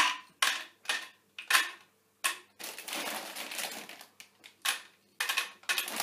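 Dry pasta being dropped into a plastic drinks bottle, clattering against the plastic. It comes as a series of short rattles, with a longer run of rattling in the middle.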